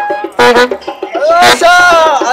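Trumpet and saxophone street music stops right at the start, followed by loud whooping shouts whose pitch rises and falls, with a couple of sharp knocks.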